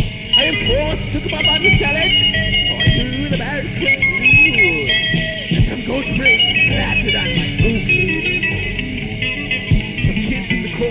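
Lo-fi four-track cassette home recording of a spoof thrash/death metal band playing an instrumental passage, with electric guitar and many bending, wavering notes.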